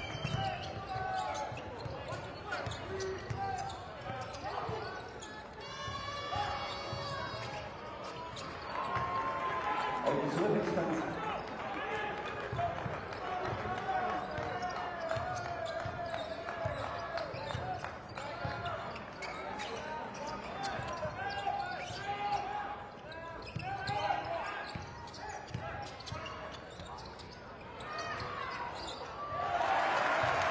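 Arena sound of a basketball game in play: a ball being dribbled on a hardwood court, with repeated short bounces, over indistinct crowd and player voices.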